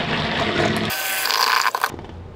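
Stick blender running in a small cup of raw cold-process soap batter, churning the liquid as black colorant is blended in, then cutting off suddenly near the end.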